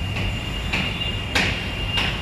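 Street traffic rumble with a thin, steady high-pitched squeal over it and three sharp clicks about half a second apart, the middle one loudest.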